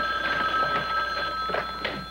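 Desk telephone ringing with one long, steady ring that stops about a second and a half in as the handset is picked up.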